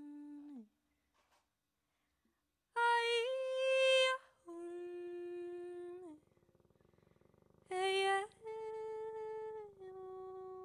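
A woman's voice sings unaccompanied, wordless and with no words picked up, in slow sustained notes. A held note falls off and stops half a second in. After a silence, two phrases follow, each a short louder note that slides up and then gives way to a softer, longer held note that bends down at its end. A new held note begins as the passage closes.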